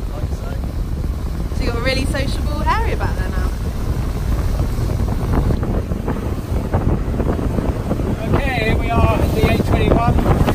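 Twin Yamaha 200 hp outboards driving a RIB at cruising speed, about 4,000 rpm, heard as a steady rumble under wind buffeting the microphone and water rushing past the hull. Brief indistinct voices come through twice.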